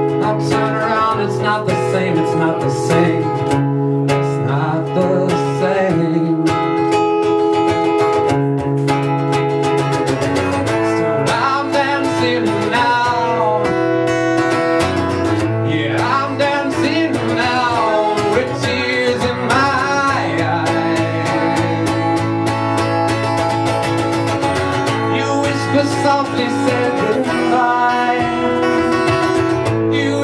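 Solo live performance: a guitar playing chords steadily, with a man singing over it in stretches.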